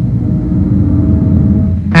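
A loud, steady low rumble with a faint held tone above it, from the soundtrack of a horror film clip.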